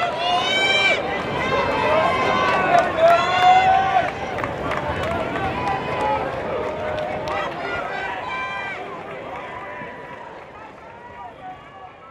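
Voices of people around the track, talking and calling out with no clear words. The sound fades out gradually over the second half.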